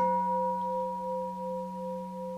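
A large hammered bronze bowl gong, the Chinese temple da qing, ringing on after one stroke of a padded mallet: a steady low hum with several clear higher tones above it, slowly fading, with a slight pulsing waver.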